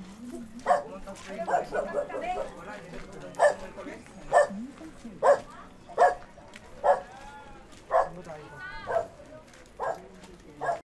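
A dog barking repeatedly, short barks about once a second for the second half, over low street chatter of voices.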